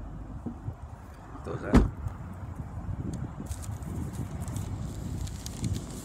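A single heavy thump a little under two seconds in, over a steady low rumble, with a few faint clicks later on.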